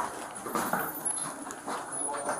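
Light, irregular footsteps and shuffling on a hard floor, with clothing and handling noise picked up by a body-worn police camera.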